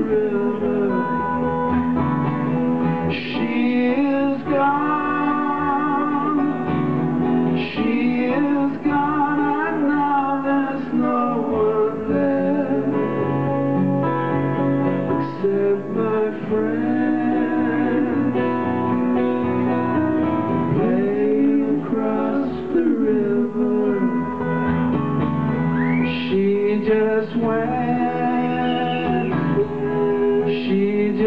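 Live acoustic guitar being strummed under male vocals singing long, bending lines, as a continuous song.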